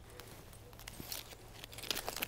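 Quiet outdoor background with a few faint light clicks: a metal chain and S-hook being handled as the planter is lifted to hang.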